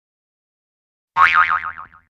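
A comic sound effect: one springy tone wobbling quickly up and down, starting about a second in and fading within a second.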